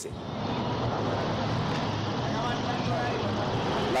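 Street noise recorded on a phone: traffic and a stopped motorcycle's engine running, with faint voices in the middle.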